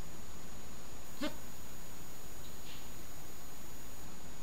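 Steady room tone and recording hiss with a thin high whine. About a second in comes one faint, short pitched sound.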